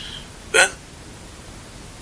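Speech only: a man says one short word about half a second in, then a pause of faint room tone.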